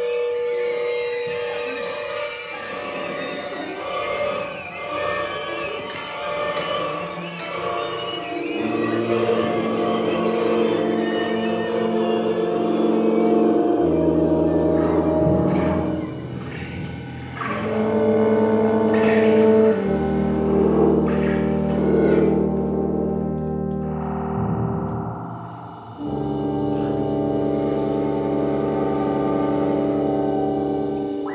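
A large ensemble of woodwinds and guitars playing. A dense, shifting texture at first gives way to held chords that change every few seconds, with a low bass coming in about halfway through.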